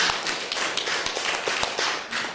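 Small audience applauding: many separate hand claps at an uneven, quick pace.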